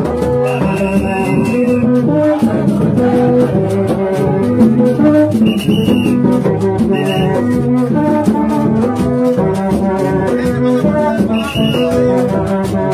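Gagá music played live: low, horn-like notes in a short repeating pattern over steady rattling percussion, with a high whistle blown four times.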